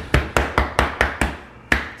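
Open hand slapping a raw beef brisket about eight times in quick succession, patting the salt-and-pepper rub into the meat on a wooden cutting board.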